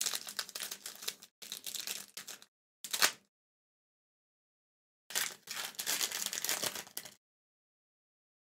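Foil Pokémon booster pack wrapper being torn open and crinkled in four bursts. The shortest, loudest burst comes about three seconds in.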